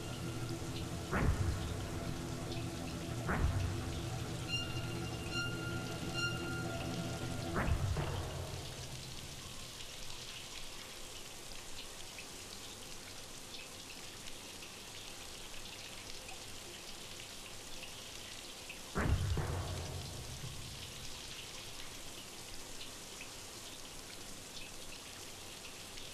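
Shower water spraying steadily on a tiled stall, under dramatic film-score music with sharp, heavy hits at about 1, 3 and 8 seconds. The music fades out after that, leaving the water running alone, with one more heavy hit about 19 seconds in.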